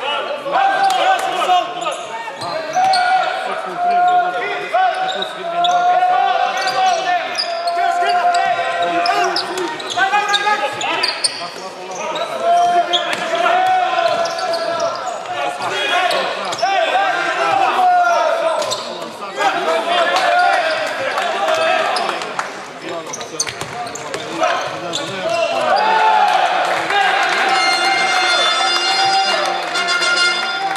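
Basketball being bounced on a hardwood court during play in an echoing sports hall, under continuous shouting voices.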